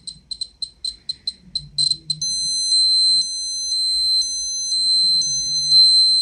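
Ecotest Terra MKS-05 dosimeter's beeper: a quick irregular run of short high beeps, then from about two seconds in a continuous high-pitched alarm tone that pulses about once a second.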